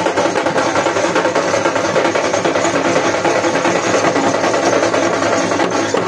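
Loud, dense folk drumming from dhol barrel drums with other percussion, a continuous busy beat without a break, played for a Danda Nacha dance.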